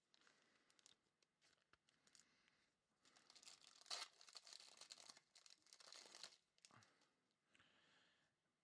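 A foil trading-card pack being torn open by hand, its wrapper crinkling. There are a few faint ticks first, then quiet crinkling from about three to six seconds in.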